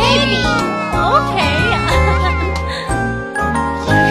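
Children's cartoon song: high child-like voices singing over bright backing music with a steady bass line.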